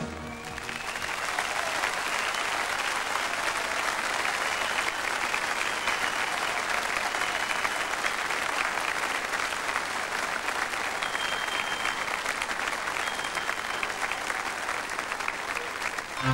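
Large audience applauding: steady, dense clapping that holds at an even level throughout.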